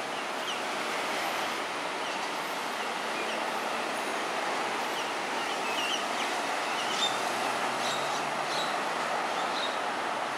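Myna nestlings giving short, high chirps from the nest hole, scattered through and more frequent in the second half. They sit over a steady rushing background noise that is louder than the calls.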